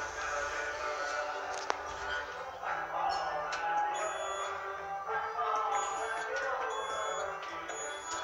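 Music of layered, held tones. From about halfway, a series of short, high beeps comes as the lift's floor buttons are pressed one after another.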